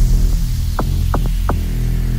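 Electronic bass music in a DJ mix: a sustained deep bass drone, with three short falling synth zaps in the second half.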